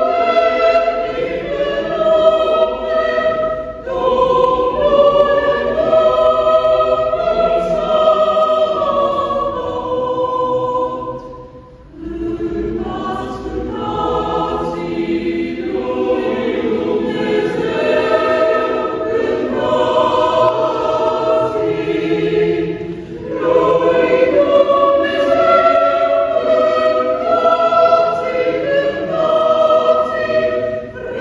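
Mixed choir of women's and men's voices singing sacred choral music in sustained chords. There is a short break between phrases about twelve seconds in, and a smaller one some eleven seconds later.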